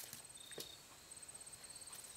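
Near silence with a faint, high-pitched, rapidly pulsing insect chirp that pauses briefly about a second in.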